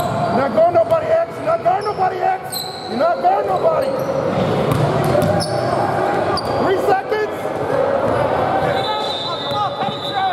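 Basketball bouncing on a hardwood gym floor during play, with players calling out and short sneaker squeaks, echoing in a large gym.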